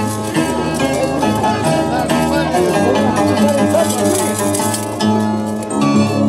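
Andean harp, carried upside down on the player's shoulder, plucked together with a violin in a traditional Andean tune.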